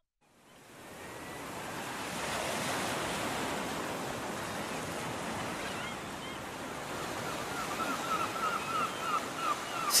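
Ocean waves washing on a shore, fading in from silence over the first couple of seconds and then steady, with faint short repeated high notes joining in over the last few seconds.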